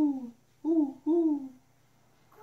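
A man imitating an owl with his voice: three short hoots, each falling a little in pitch, the last two back to back about half a second in.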